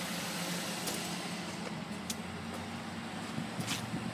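2010 Mazda 3 GT's 2.5-litre four-cylinder engine idling steadily, a low even hum with a few faint clicks over it.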